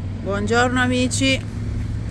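A steady low rumble of road traffic, with a woman's voice heard briefly in the first second and a half.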